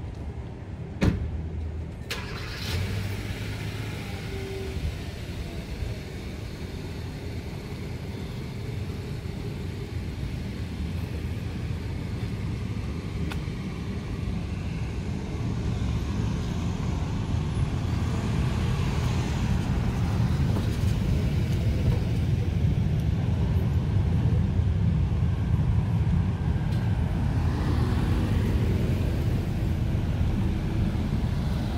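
Road traffic on a town street: car engines and tyres making a low rumble that grows louder over the second half as vehicles come closer. A single sharp click about a second in.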